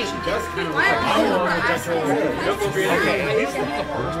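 Several voices talking and reacting over one another at once, as a continuous chatter of overlapping speech.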